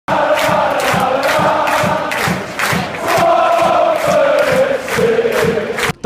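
A large crowd chanting in unison, with a steady beat about twice a second; the chant cuts off suddenly near the end.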